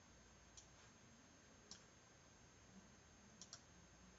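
Near silence with a few faint computer mouse clicks: single clicks about half a second and a second and a half in, then a quick double click near the end.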